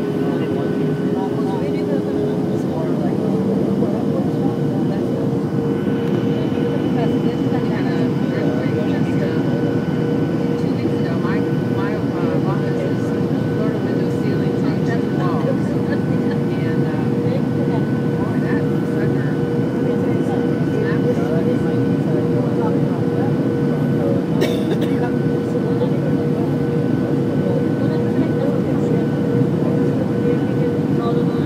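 Jet airliner cabin noise on final approach: a steady rush of engines and airflow heard from inside the cabin, with an engine tone that rises a little about two and a half seconds in.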